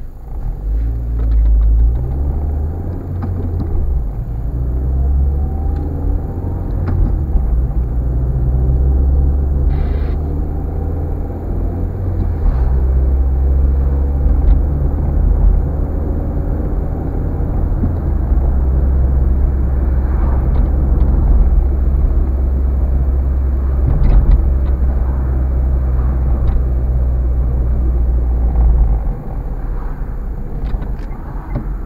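Car engine and road rumble heard from inside the cabin while driving, a steady low drone whose pitch steps up and down a few times as the car changes speed.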